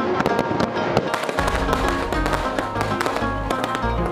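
Fireworks crackling and popping in quick succession, with many sharp reports, over background music. A deep bass pulse enters in the music about a second and a half in.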